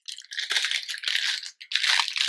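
Clear plastic bag of small wooden pegs crinkling as it is handled and turned over, a dense crackle with a short break near the end.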